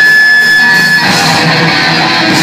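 Live thrash metal band playing loud, distorted electric guitars over bass and drums. A single high guitar note is held through the first second, then the sound of the full band grows fuller and brighter about a second in.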